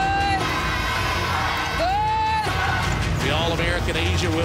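Background music with two long held notes, one at the start and one about two seconds in, over arena crowd noise.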